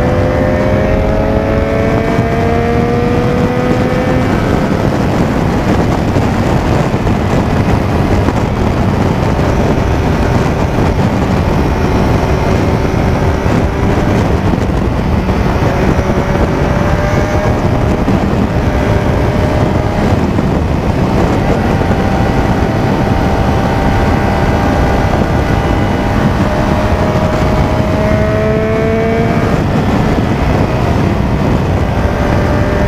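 Motorcycle riding at highway speed, heavy wind rush on the rider-mounted microphone over the engine. The engine's pitch rises as it accelerates in the first few seconds and again near the end.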